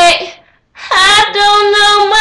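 A young girl singing unaccompanied: a short loud note that fades, a brief break, then a long held note from just under a second in.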